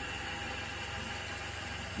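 RV toilet flushing: a steady rush of rinse water spraying around the bowl and draining through the open flush valve.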